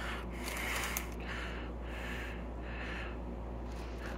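A person breathing audibly close to the microphone: a run of short, quick breaths, about two a second, over a steady low hum.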